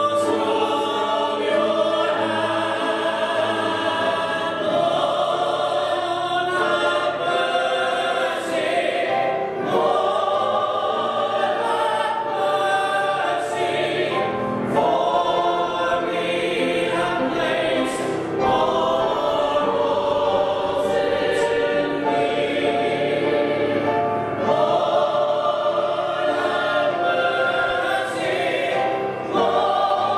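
Mixed church choir of men's and women's voices singing together, in sung phrases broken by short pauses every few seconds.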